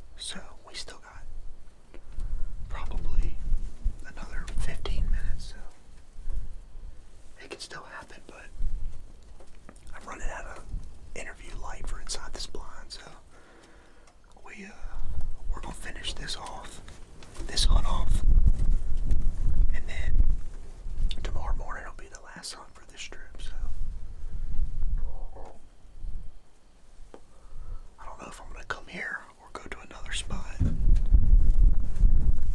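A man whispering in hushed stretches, with low rumbles under it at times.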